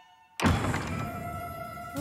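A cartoon thunk sound effect hits suddenly about half a second in, after a brief near-silence, followed by background music with a held note that slowly fades.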